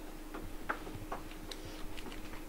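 Quiet classroom with students writing: a scattering of small, irregular clicks and taps from pens and desks over a faint steady hum.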